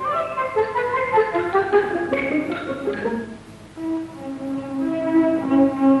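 Cartoon background music: a quick run of short notes, a brief drop in loudness about three and a half seconds in, then held lower notes.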